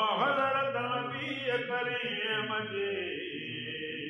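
Group of men's voices chanting a Sindhi molood madah, a devotional praise hymn, holding one long phrase. The pitch bends at the start, and the phrase slowly fades toward the end.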